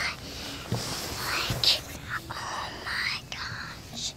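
A child whispering in a run of short, breathy syllables, with a few sharp hissing sounds.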